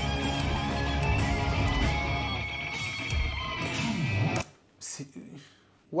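Live band jam with electric guitar improvising over bass and drums. The music cuts off abruptly about four and a half seconds in, leaving quiet with a short voice fragment.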